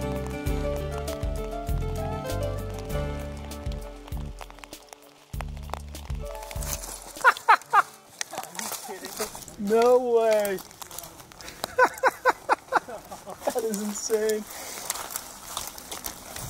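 Background music for about the first six seconds. Once it stops, a series of short, loud voice calls with sliding pitch follows, including one rising-and-falling call near the middle.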